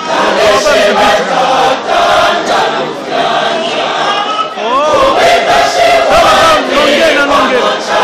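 A church choir singing loudly in full voice, mixed with crowd voices and a rising-then-falling call about five seconds in.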